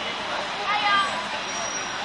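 Street traffic noise with voices over it. A high, raised voice rises out of it briefly, about three quarters of a second in.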